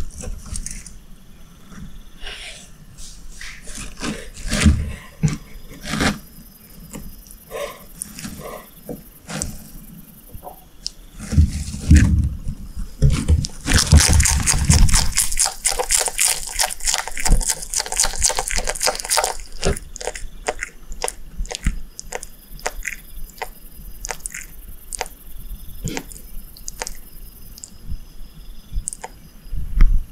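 Bearded dragon chewing darkling beetles close up: a run of sharp, crisp crunching clicks that grows dense and fast about halfway through, with a few low thumps around it.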